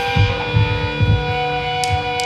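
Electric guitars through amplifiers holding a sustained, ringing chord with a steady hum, between songs of a live hardcore set. A couple of low drum thumps come in the first second, and light cymbal or stick ticks come near the end.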